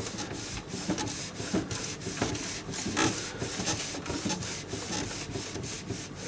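Gloved hands working inside an EcoTank inkjet printer around the print head and the cloth beneath it: irregular rubbing and scraping with many light clicks of plastic parts.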